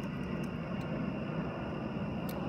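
Steady low background rumble with no distinct events, and a faint steady high tone above it.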